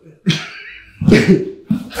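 A man's forceful, breathy vocal effort, a grunt and hard exhale while straining to lift a grappling partner, followed by laughter near the end.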